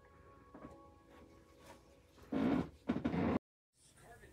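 Faint music with a few steady held notes, then a loud, rough burst about two and a half seconds in that stops suddenly.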